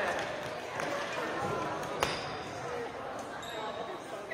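Badminton gym sound: scattered sharp hits of rackets on shuttlecocks, the loudest a single crack about two seconds in, over a murmur of voices in a large, echoing hall.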